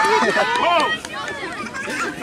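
Several voices calling and shouting over one another, some of them high like children's, loudest in the first second and thinning out after.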